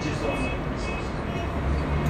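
Steady rumbling background noise with hiss, with faint traces of a man's voice.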